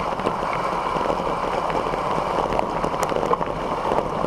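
Fat tires of a Voltbike Yukon 750 electric bike rolling downhill on a loose gravel road: a steady rumbling hiss from the tires on the gravel, with a few sharp ticks of stones and rattles.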